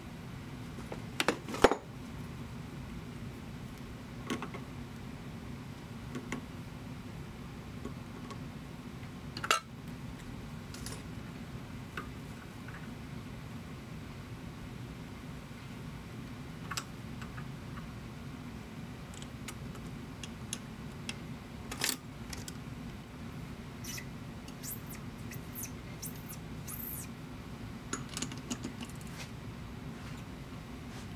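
Scattered metallic clicks and clinks as a small hex adapter is handled and test-fitted into the bore of a machined aluminum handle held in a stopped lathe chuck. The sharpest clicks come at about a second and a half in, near ten seconds and near twenty-two seconds, with a cluster of lighter ones near the end, over a steady low hum.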